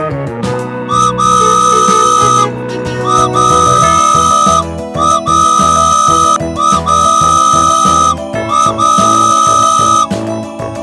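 Cartoon train whistle sound effect tooting five times, each a held high tone about a second and a half long with a short upward scoop at its start, over children's background music.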